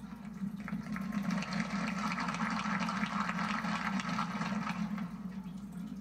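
Audience applauding, a dense crackle of many hands that builds about a second in and thins near the end, heard through a television's speaker over a steady low hum.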